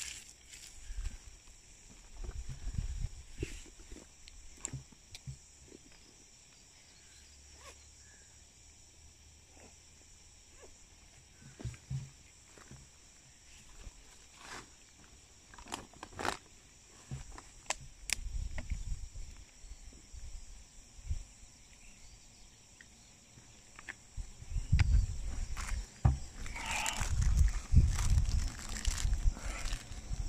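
Gusts of wind buffeting the microphone, loudest in the last few seconds, with rustling and sharp clicks of gear being handled in a backpack over a steady faint high hiss.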